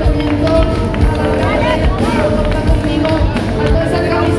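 Live band music over a PA, with a steady kick-drum beat under held instrument notes, and a woman's voice on a microphone over it.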